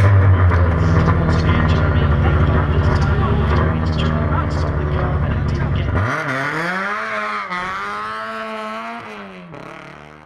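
Race car engine running steadily, then about six seconds in its pitch rises sharply and holds, wavering, as it fades away.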